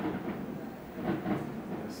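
A man's voice speaking briefly and softly, ending in "Yes", over low room noise.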